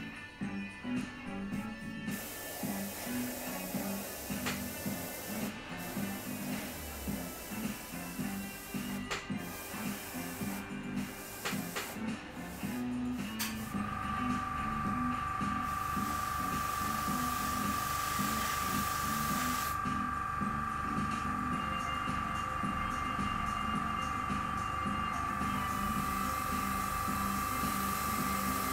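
Background music throughout. From about halfway, an airbrush gives a steady hiss with a high whistle as it sprays paint, held on a light trigger.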